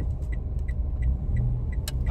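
Car interior road and engine rumble while driving, steady and low. A faint light tick repeats about three times a second, and there is one sharp click near the end.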